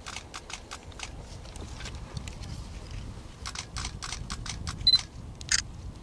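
Camera shutters clicking again and again, sometimes in quick bursts, over a low rumble. A short high beep comes near the end of the bursts, followed by a louder single click.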